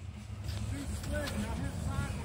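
Off-road vehicle's engine running in a clay mud pit, heard as a low rumble that grows a little louder as it gets ready to take another run at the slope.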